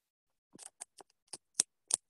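A run of about seven small, sharp clicks at irregular spacing, beginning about half a second in after a brief silence.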